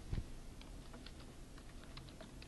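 Faint computer keyboard typing: a few scattered keystrokes, with a dull thump just after the start.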